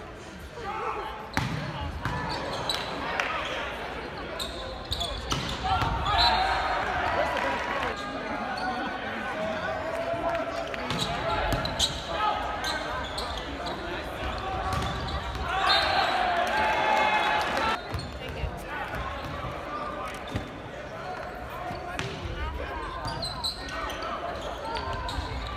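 Volleyball rally: a series of sharp smacks of the ball off hands and arms. Shouts and cheering from players and crowd rise twice, about six seconds in and again around sixteen seconds.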